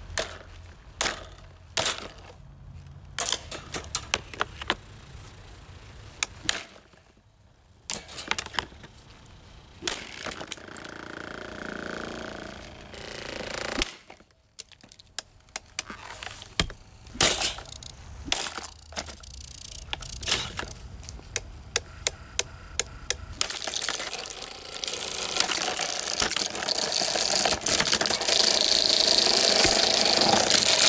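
Irregular sharp knocks and cracks of a plastic SMC table fan and its wire grille being struck with a metal club and handled, with long stretches of rapid clatter. Near the end a rushing noise swells up and stays loud.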